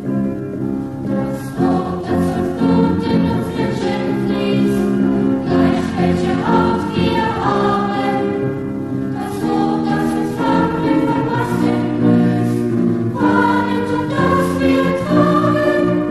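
A student choir singing a German song in unison, with instrumental accompaniment.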